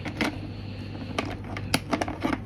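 Four sharp plastic clicks and taps from a hand handling and pressing a Sepura STP8040 TETRA radio handset to switch it on, over a low steady hum.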